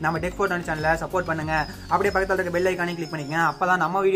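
A man's voice talking, with no other clear sound.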